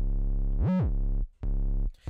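808 bass playing on its own in a trap beat: long held bass notes, one sliding up in pitch and back down just under a second in, then a short break before another note near the end.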